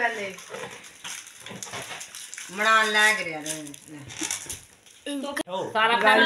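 People's voices in a small room: one drawn-out utterance in the middle and more talk near the end, with light rustling and handling noise between them.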